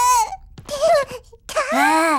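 A cartoon character's wordless, whining wails: a held wail that falls away at the start, a short cry, then a rising-and-falling wail near the end.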